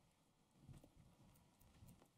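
Near silence with a few faint footsteps on a hard floor as a person starts to walk, starting a little under a second in.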